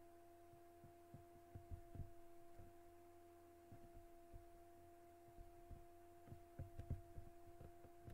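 Near silence: faint room tone with a steady low hum and scattered soft low thumps.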